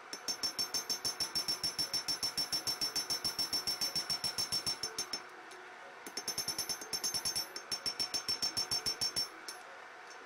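Hand hammer forging a red-hot spring-steel knife blank on an anvil: rapid, even blows, about five a second, each with a high metallic ring. The hammering stops for about a second around five seconds in, resumes, and stops a little after nine seconds.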